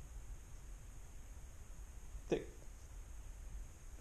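Quiet room tone with a steady low hum, broken once, a little past halfway, by a single short spoken word.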